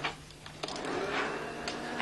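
Crackling and rustling of torn paper scraps, starting about half a second in and continuing as a dense, crisp noise.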